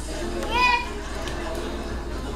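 A toddler's short, high-pitched squeal that rises and falls about half a second in, over background talk.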